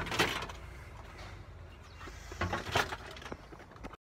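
Handling noise, rustling with a few scattered clicks and knocks, and a couple of louder bursts near three seconds in.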